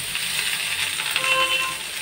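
Steady sizzling in a hot kadhai as chopped water spinach (karmi) greens are tipped in onto frying potatoes.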